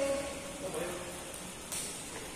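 Badminton rally in a large hall: one crisp racket-on-shuttlecock hit near the end, over a steady hiss of hall noise.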